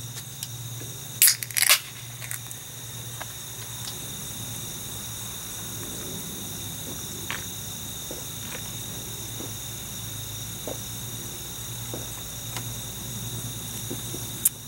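An aluminium beer can (Budweiser) is cracked open with two sharp pops from the pull tab a little over a second in. It is then drunk from, with a few faint gulps and clicks over a steady background hum.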